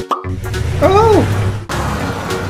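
Background music for children, with a short pop just after the start and a brief pitched sound that rises and then falls about a second in.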